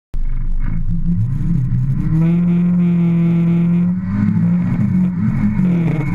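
Ford Escort RS2000 race car engine heard from inside the stripped cabin. The revs climb, hold steady for about two seconds, then dip briefly and rise and fall again.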